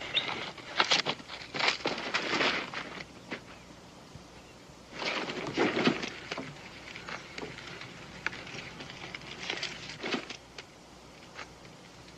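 Scattered scuffs and rustles: footsteps on dirt and a leather saddlebag being handled and opened, uneven and loudest in two spells, one early and one about halfway through.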